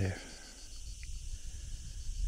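Low, uneven wind rumble on the microphone, with insects chirping faintly in a steady, even high-pitched pulse. The last word of speech ends right at the start.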